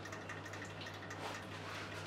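Quiet room tone: a steady low hum with a few faint, soft rustles of clothing as a person turns in place.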